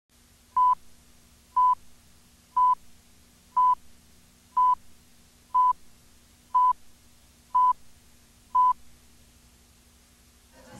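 Countdown leader beeps: nine short, identical high beeps, one each second, over a faint steady hum.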